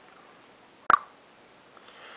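A single sharp tap of tweezers against a clear plastic tub, about a second in.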